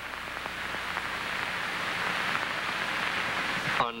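A steady hiss-like noise that slowly swells louder, over a low steady hum, and stops abruptly near the end.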